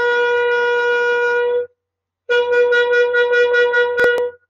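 Shofar being sounded: a long, steady note that cuts off about a second and a half in, then, after a short pause, a second blast at the same pitch that wavers rapidly.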